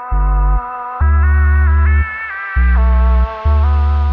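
Electronic music from an Ableton Live set: a held synth line steps between sustained notes over a bass line of long low notes that change about every half second to a second. Clips start and stop as they are launched from the pads.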